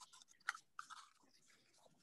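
Faint crackles of a small cardboard box being folded and its flaps tucked in by hand: a few soft crunches in the first second, otherwise near silence.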